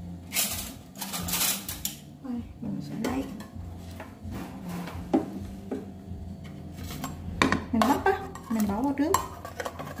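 Metal ladle clinking and knocking against a stainless-steel cooking pot and a bamboo basket, in irregular strokes, as chunks of corn on the cob are pushed into the pot of water.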